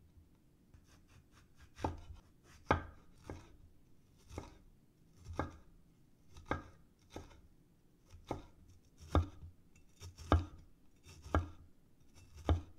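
Cleaver-style kitchen knife slicing a red bell pepper on a wooden cutting board: about ten sharp knocks of the blade on the board, roughly one a second, starting about two seconds in.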